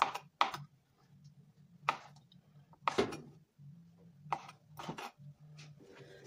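Kitchen knife chopping pickled pork skin on a plastic cutting board: about half a dozen sharp knife strikes against the board at irregular intervals.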